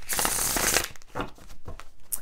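Deck of tarot cards being riffle-shuffled and bridged: a dense rush of cards falling together for just under a second, then a few light clicks of cards being handled.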